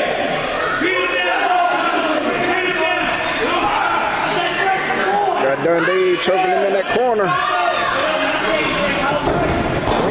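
A small crowd yelling and shouting in an echoing hall, voices overlapping throughout, with two sharp knocks about six and seven seconds in.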